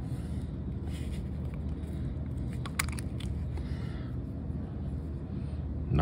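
Steady low background hum, with a few faint clicks as the small metal airbrush parts and paint cup are handled.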